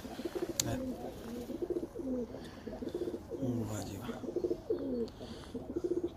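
Pigeons cooing, one low coo after another with several birds overlapping. A single sharp click sounds about half a second in.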